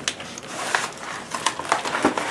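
Cardboard shipping box and its foam packing being handled, with irregular rustles, scrapes and light knocks as hands dig inside the box.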